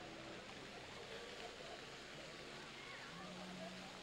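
Faint steady splashing of a plaza fountain's rows of water jets, with faint distant voices.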